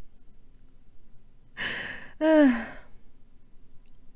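A person's sigh: a breathy rush of air about one and a half seconds in, then a short voiced exhale falling in pitch.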